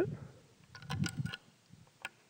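A cluster of light metallic clicks and knocks about a second in from the action of a .30-40 trapdoor Springfield rifle as it is reloaded, a round going into the open breech and the hinged breech block being handled.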